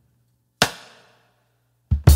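Sharp percussive hits with a short echoing tail in the soundtrack's sparse intro: one just over half a second in, then a quick double hit at the end, over a faint low held tone.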